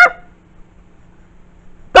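Quiet pause between spoken lines, with only a faint steady low hum. A voice trails off right at the start and another begins at the very end.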